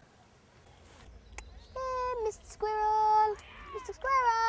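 A young girl's voice singing long held notes: two in the second half, a third starting right at the end, each dropping in pitch as it ends.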